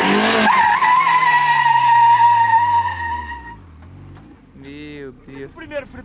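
Fiat Uno's four-cylinder engine revved hard as the car launches in first gear, its front tyres squealing in a steady screech that lasts about three seconds while the engine revs sink. The squeal cuts off about three and a half seconds in, and voices and laughter follow near the end.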